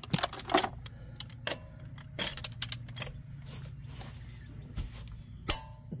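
Irregular metallic clinks and clicks of hand tools as a socket and extension are picked up off the gravel and fitted to a worn Snap-on ratchet on a lug nut, with a quick run of clicks about two seconds in.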